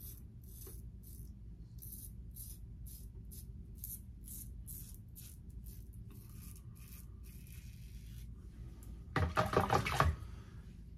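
Double-edge safety razor scraping through lathered beard stubble in short, quick strokes, about three a second, then pausing. A louder rush of noise near the end.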